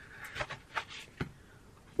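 Paper dust jacket of a hardcover book rustling and crinkling as it is slid off, in several short crinkles, with a soft knock of the book a little after a second in.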